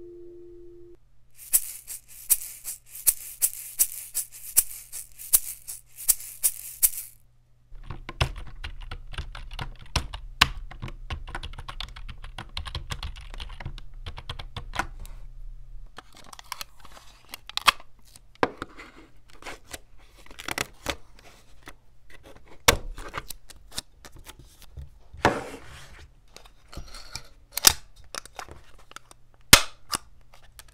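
A run of desk-object test sounds picked up by a tiny dynamic microphone. The last note of a steel tongue drum fades in the first second. Then come a string of sharp clicks, a scratchy stretch with clicks as clear tape is handled and pulled from its dispenser, and scattered knocks and sharp clacks as a stapler is handled and pressed near the end.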